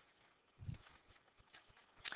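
Near silence: room tone, with one faint low thump about two-thirds of a second in.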